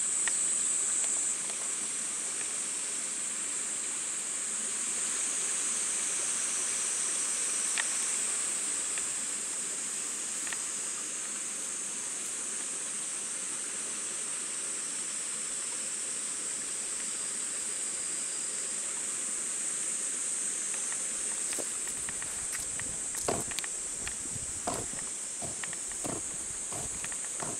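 Steady, high-pitched chorus of summer insects. A few short rustles and knocks near the end fit dogs moving through the grass.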